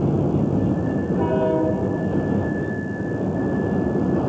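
Freight train boxcars rolling past a grade crossing: a steady, dense rumble and rattle of wheels on rail. A short pitched tone sounds about a second in, and a thin high tone runs through the middle.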